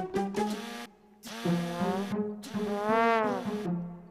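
Cartoon background music in three short brass-like phrases with brief gaps between them. The last phrase ends on a note that bends up and back down.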